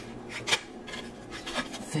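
Cards rubbing and sliding against each other as a card is drawn from the deck, with a few short soft ticks, the sharpest about half a second in.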